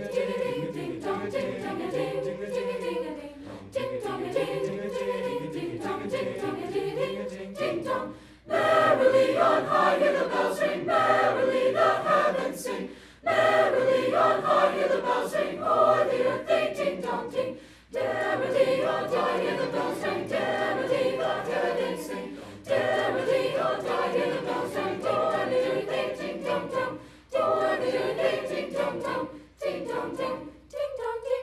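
A mixed choir of boys and girls singing together in long phrases separated by short breaks, growing louder and fuller about eight seconds in.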